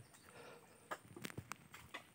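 Faint, scattered wet clicks and pops from soft mud being worked by hand in a shallow creek channel, coming irregularly and mostly in the second half.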